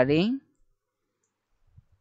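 A voice saying one short questioning word with rising pitch, then near silence broken by a faint single click near the end.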